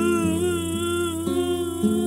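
Live acoustic guitar being picked, with new notes sounding a few times, under a held wordless vocal note with vibrato that fades out about a second in.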